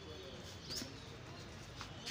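Faint bird chirp over a low steady outdoor background, with one short high chirp about three-quarters of a second in.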